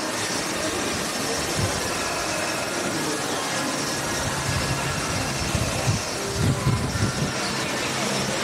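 Steady rush of water spraying and splashing from jets across the ride channel. A few short low bumps come in the second half.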